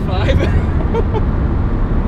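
Steady low drone inside the cabin of a 1987 Ferrari Testarossa cruising at highway speed: its flat-12 engine and road noise, with a person laughing in the first second.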